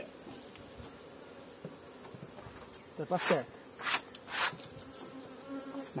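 Honeybees from a strong, newly hived colony buzzing around their wooden hive box in a faint, steady hum. A few brief scrapes or rustles come about three to four and a half seconds in.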